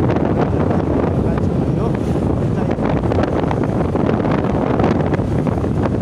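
Wind buffeting the microphone of a camera riding along a road, a steady rushing noise over the vehicle's running.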